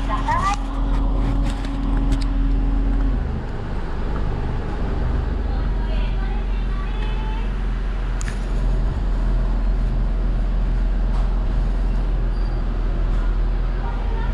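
A car engine idling, heard from inside the cabin as a steady low hum. A higher steady hum cuts off about three seconds in, and faint voices come through briefly at the start and again around six seconds in.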